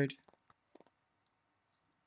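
A man's spoken word trailing off, then near silence broken by a few faint, short clicks in the first second.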